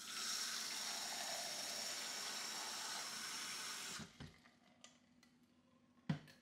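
Kitchen faucet running a steady stream of water into the top reservoir of a Brita filter pitcher for about four seconds, then shut off. A couple of light knocks follow.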